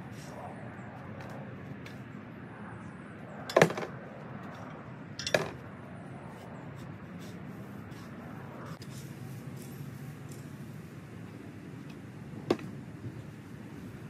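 Metal garden-fork tines striking stones in dry, rocky soil: three sharp clinks, two a couple of seconds apart early on and one near the end, over a steady low background noise.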